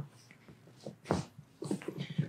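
A few short, sharp clicks during a chiropractic foot and ankle adjustment as hands work a bare foot, the loudest a little over a second in, with smaller ones shortly after.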